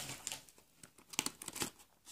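Faint, scattered crinkling and rustling of foil-wrapped Easter eggs being handled and dropped into a paper treat bag.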